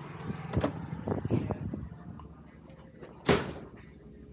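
A glass shop door with a metal push bar being pulled open, with clicks and knocks from the handle and latch, while the outdoor hum fades as the door swings shut. About three seconds in comes one short, sharp thump, the loudest sound here.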